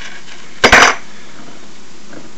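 A short clatter of clinking glass about two-thirds of a second in, as a glass bottle and drinking glass are handled to pour.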